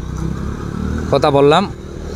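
A motorcycle engine running as it rides along the road, a low steady rumble. About a second in, a man speaks briefly over it.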